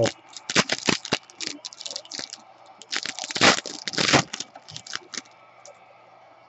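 Trading cards and pack wrapper being handled and flipped: a run of short crinkles, snaps and crackles, densest about three to four seconds in.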